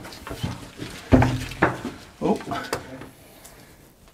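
A man grunting and breathing with effort as he climbs a narrow stone spiral staircase, with a louder grunt about a second in. Scattered knocks and scrapes come from the crossbow and its windlass catching on the steps and walls.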